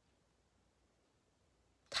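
Near silence: room tone. A woman's voice comes back in at the very end.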